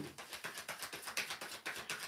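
A tarot deck being shuffled by hand: a rapid run of soft card clicks.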